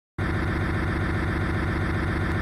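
A pickup truck engine running steadily with a low, evenly pulsing rumble, starting abruptly just after the opening silence.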